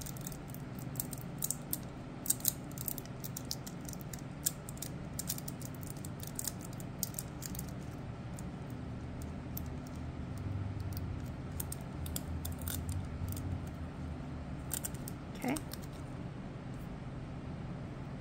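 Long acrylic nails and crinkly nail transfer foil being rubbed and pressed onto a plastic nail tip: a run of small irregular clicks and crackles, thick for the first several seconds, sparser after, with another cluster near the end.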